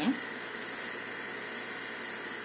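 Metal spoon spreading a creamy sauce over a thick corn tortilla, giving a couple of faint soft scrapes over a steady background hiss with a thin high hum.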